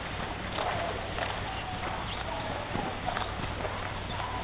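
Hoofbeats of a horse moving on a lunge line over soft dirt arena footing, a loose series of muffled footfalls.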